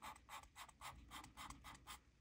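Paper tortillon rubbed in short downward strokes over graphite shading on a small paper drawing tile, blending the pencil: faint scratching, about four strokes a second, stopping near the end.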